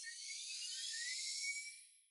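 A high, shimmering sound effect with tones gliding upward, swelling and then fading away shortly before the end.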